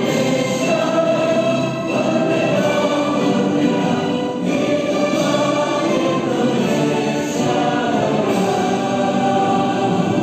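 A choir singing a slow, sustained song with instrumental accompaniment.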